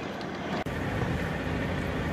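Semi truck driving, heard inside the cab: a steady low rumble of engine and road noise. It changes abruptly about two-thirds of a second in, then carries on, with the cab shaking over a rough stretch of road.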